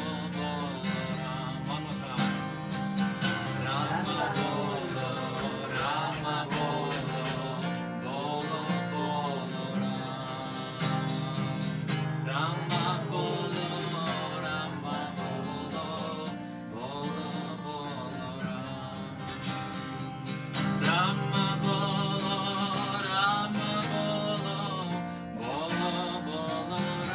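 Acoustic guitar strummed under group devotional chanting (kirtan), with the voices singing in call and response. It gets a little louder past the middle.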